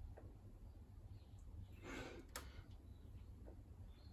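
Near silence over a low steady rumble. About halfway through comes one short breath from the lifter between overhead-press reps, followed at once by a faint click.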